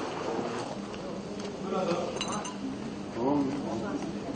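Faint voices talking in the background, with a few light clinks near the middle.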